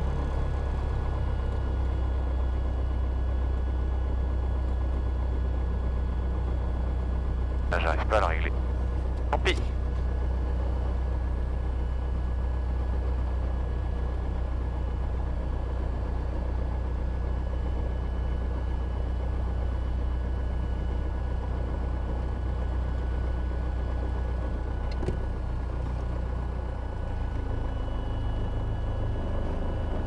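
Robin DR400 light aircraft's piston engine running at low taxiing power, a steady drone heard from inside the cockpit; its note drops a little near the end. Two brief short sounds come through about eight and nine and a half seconds in.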